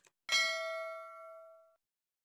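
A single struck bell-like ding with several ringing overtones, fading for about a second and a half and then cut off suddenly. A faint click comes just before it.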